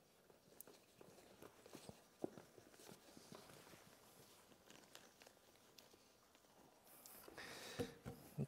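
Near silence, with faint small ticks and rustles from fingers working a short piece of shrink tubing over a paracord zipper-pull knot on a fabric pouch.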